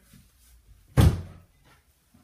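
A door shutting once about a second in: a single sharp thud that dies away quickly in the room.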